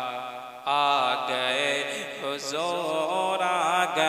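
A man singing a naat into a microphone, holding long, wavering melismatic notes. The voice drops away briefly about half a second in, then comes back at full strength.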